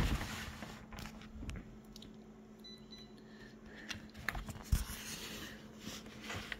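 A magazine page being shifted and laid flat on a photocopier: quiet paper rustles and a few light taps and clicks, over a faint steady hum.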